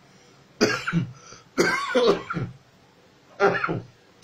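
A man coughing in three bursts spread over a few seconds, the middle one the longest: a lingering cough that has been troubling him and roughening his voice.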